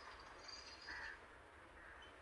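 Near silence with a faint, short bird call about a second in.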